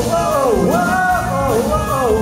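Live rock band playing: a lead vocal sung over electric guitars, bass and drums, the melody swooping down and back up in long sung notes.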